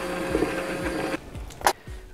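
Immersion blender running steadily with a humming whine as it purées thick peanut sauce, then switched off about a second in. A single short click follows.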